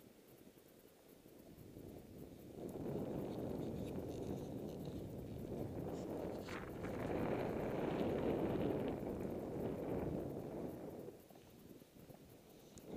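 Snowboard running through deep powder snow: a steady rushing noise that comes in about two and a half seconds in and drops away shortly before the end.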